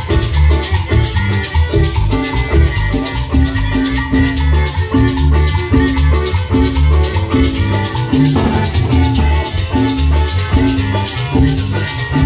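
Live Salvadoran chanchona band playing an instrumental stretch of cumbia: violins and electric guitar over bass and drum kit, with a steady dance beat and a shaken rattle.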